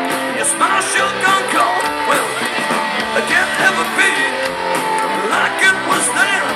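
Live rock band playing: electric guitar over electric bass and drums.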